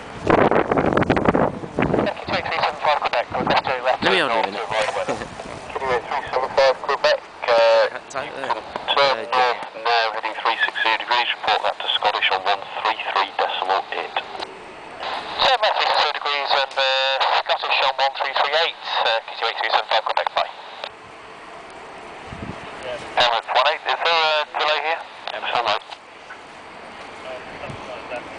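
Air traffic control radio chatter from a handheld airband scanner's speaker: tinny, thin voices in long stretches of transmission, with hiss between them near the end.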